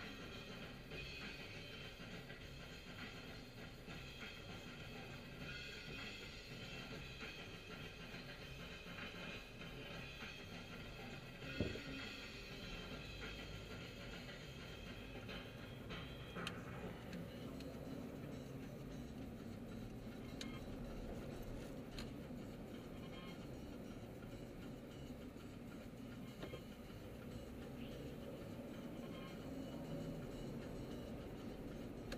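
Music playing quietly from a car stereo, heard inside the cabin, thinning out about halfway through. A single sharp knock comes a little before the middle.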